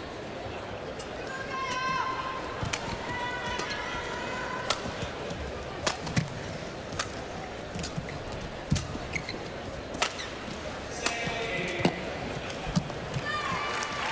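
Badminton rally: sharp racket strikes on the shuttlecock every one to two seconds, about nine in all. Shoes squeak on the court floor near the start and again late on, over a steady arena crowd murmur.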